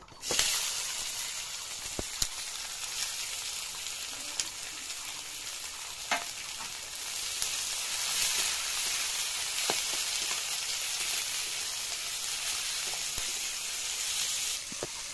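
Sliced onions dropped into hot oil in a kadai, sizzling the moment they hit the oil and then frying steadily as a steel spatula stirs them. A few sharp clicks of the spatula against the pan sound through the sizzle.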